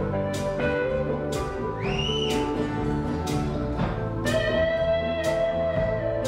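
Live band instrumental passage with an electric guitar lead over bass and drums. The drum hits fall about twice a second. The guitar bends a note upward and holds it about two seconds in, then sustains a long note from a little past four seconds.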